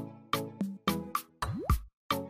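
Short electronic outro jingle for an animated end screen: a quick run of punchy beat hits, about three a second, then a swoosh rising in pitch that lands on a deep, loud boom about a second and a half in.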